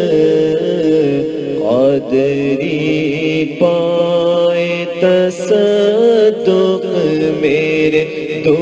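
Urdu devotional song (a manqabat in praise of Ghaus-e-Azam) sung in long, held notes that glide from one pitch to the next.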